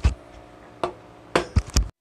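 Handling noise from a V8 sound card being moved on a table: about five sharp knocks and clicks, the last few bunched together, over a faint hum. The sound cuts off suddenly just before the end.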